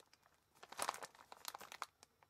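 Plastic instant-ramen multipack bag crinkling as it is handled, in an irregular run of crackles from about half a second in until near the end.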